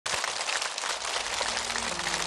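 Audience applauding, a dense even clatter of many hands that starts abruptly.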